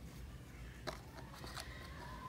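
Two faint taps of a finger on a smartphone's glass screen, about a second and a second and a half in, over steady low background noise.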